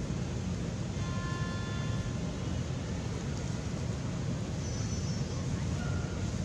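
Steady low outdoor rumble, with two brief high thin tones, one about a second in and one near the end.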